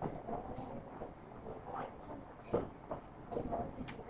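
A paintbrush working orange paint in a plastic watercolor paint tray: faint scrubbing with a few light clicks and knocks of the brush against the tray in the second half.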